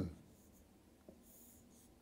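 Faint scratching of a line being drawn on a touchscreen whiteboard, with a light tap about a second in.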